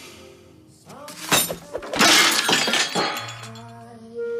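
A crash of something smashing, in two bursts about a second apart, the second louder and longer, over background music.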